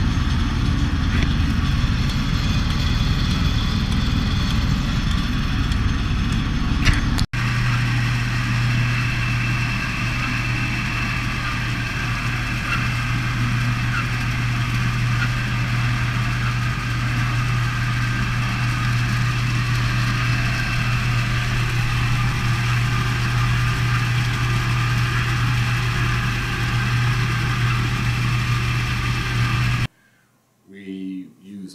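Fish elevator running over a raceway with water rushing and splashing, a broad steady rumble. After a sudden cut about seven seconds in, a steady low hum from the stocking truck, with water churning in its open tanks as trout are loaded.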